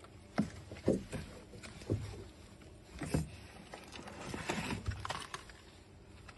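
Hands rummaging in a car's engine bay: scattered light knocks and rustling.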